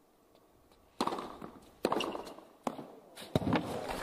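Tennis ball struck by rackets in a rally: the serve, then three more sharp hits less than a second apart.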